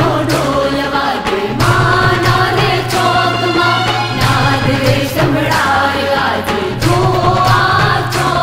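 Gujarati garba song with singing over a steady percussion beat.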